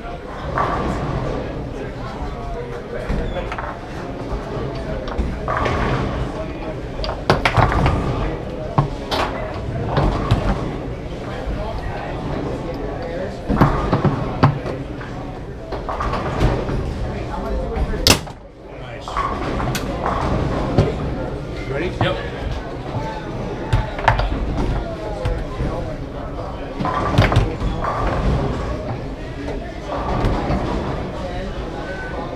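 Foosball play: sharp knocks and cracks of the hard ball being struck by the men and hitting the table, scattered irregularly through, the loudest a single crack about eighteen seconds in. Indistinct voices murmur underneath.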